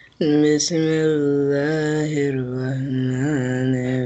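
A man reciting the Quran in Arabic in a slow, chanted style (tilawah). He begins about a fifth of a second in and holds one long drawn-out melodic line with small rises and falls in pitch.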